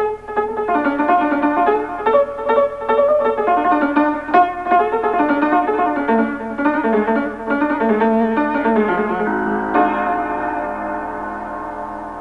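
Solo piano playing an Ethiopian melody in a quick run of notes, then settling on a held chord that slowly fades over the last couple of seconds.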